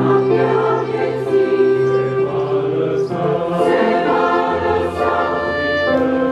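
A choir of mainly women's voices singing a slow hymn in sustained chords, with the chord changing partway through.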